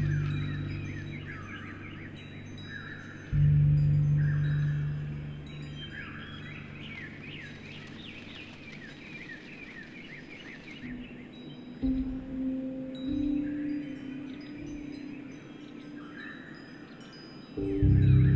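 Wind chimes ringing with birds chirping, layered over slow piano music. Deep piano notes strike about three seconds in and again near the end, and softer notes come around the middle.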